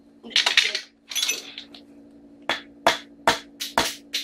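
A couple of short scrapes, then from about halfway in, sharp metallic taps about two to three a second: a screwdriver tapping the steel door of a small combination safe to sound out the fill inside, which is judged to be chalk rather than concrete. A faint steady hum runs underneath.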